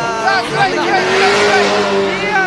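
V8-engined Nissan S13 drift car held at high revs through a long slide: a steady engine note, with tyre noise swelling about halfway through.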